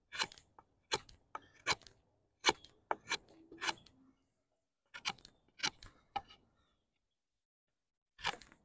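Takumitak Charge D2 steel tanto knife shaving wood off the point of a sapling stake, about ten short, crisp cuts in quick succession as the tip is refined.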